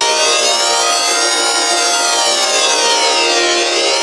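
Heavily effects-processed TV ident audio: a dense, sustained electronic chord of many steady tones under a slow flanging sweep that rises, sinks about three and a half seconds in, and rises again. It starts abruptly.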